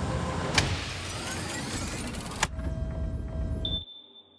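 Sci-fi sound design of lab machinery. Gas vents with a loud hiss over a low rumble, with a click about half a second in. The hiss cuts off suddenly partway through, leaving a quieter electronic hum with steady tones, and a high steady tone comes in near the end.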